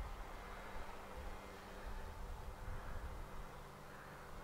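Faint outdoor background: wind on the microphone makes an uneven low rumble, under a faint steady hum.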